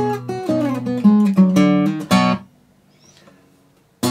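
Fingerpicked acoustic guitar, a 1986 Greven FX capoed at the second fret in the key of A, playing a short blues ending phrase with a string bend. The alternating bass is stopped to accent the bend. The notes cut off about two and a half seconds in and the guitar falls quiet.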